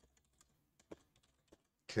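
Computer keyboard typing: about half a dozen separate key clicks, spaced unevenly. A man's voice starts near the end.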